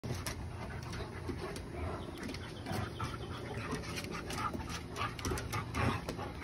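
A Great Dane and a husky play-fighting: panting and short throaty vocal noises, with many quick clicks and scuffs of claws and paws on the deck boards.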